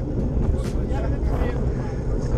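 Wind rushing over the microphone of a bicycle-mounted camera while riding, a steady low rumble.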